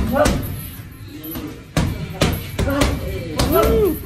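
Boxing gloves punching a hand-held Rival heavy bag: several sharp thuds at uneven intervals, some landing in quick succession.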